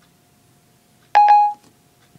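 iPhone 4S Siri chime, a short double beep about a second in, signalling that Siri has stopped listening and is processing the spoken request.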